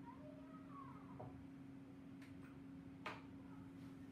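A faint animal call, gliding up and down in pitch for about a second, over a steady low hum, with a sharp light click about three seconds in.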